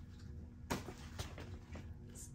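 Stack of paperback coloring books being picked up and moved aside by hand: a soft knock about two-thirds of a second in, then a few faint handling ticks, over a low steady hum.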